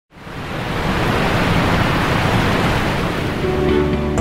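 Steady rushing noise of a large waterfall, fading in at the start. Near the end, soft music with held notes begins under it.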